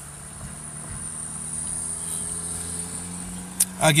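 Insects keep up a steady high-pitched drone under a low steady hum, which grows slightly louder over the first two seconds and then eases off.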